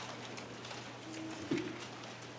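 Bible pages being turned, faint paper rustles over a low steady hum. About one and a half seconds in, a short low hum-like voice sound ends in a soft thump.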